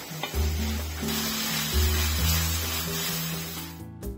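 Shredded chicken sizzling in a hot steel wok as it is stirred with a wooden spoon, under background music with a steady bass line. Sound and music fade out just before the end.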